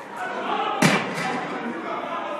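A sharp, loud slam a little under a second in, followed by a fainter knock, over a crowd's voices.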